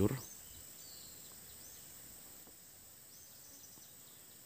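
Faint outdoor ambience: a steady high-pitched insect drone, like crickets, with a few faint high chirps.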